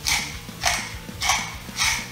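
Wooden salt mill being twisted by hand, grinding salt in four short, evenly spaced bursts, a little more than half a second apart.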